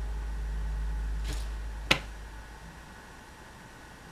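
A single sharp finger snap about two seconds in, over a low hum that fades away.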